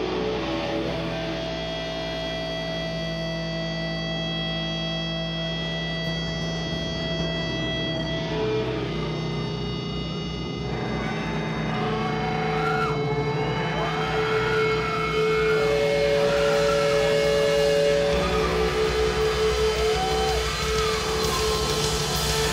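Live instrumental doom metal: distorted electric guitar and bass holding long chords over a low drone, with amplifier feedback and wavering, sliding guitar tones coming in from about twelve seconds in.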